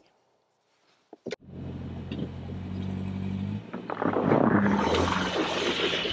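Subaru XV Crosstrek's flat-four engine running: a couple of clicks about a second in, then a steady low hum, giving way about halfway through to a louder rushing noise.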